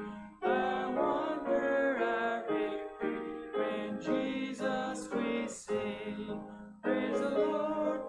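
Congregation singing a hymn with piano accompaniment, in phrases of a few seconds with brief breaths between them.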